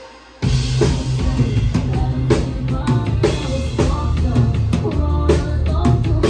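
Live rock band playing, drum kit to the fore with bass drum and snare, along with bass and electric guitar. After a brief drop-out, the full band comes crashing back in about half a second in and plays on at full volume.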